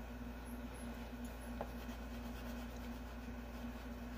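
Faint scratching of a green pastel stick being rubbed back and forth on paper while colouring, over a steady low hum.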